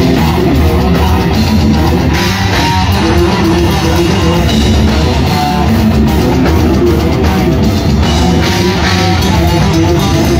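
A live rock band playing loudly without a break: electric guitar, bass guitar and drum kit together.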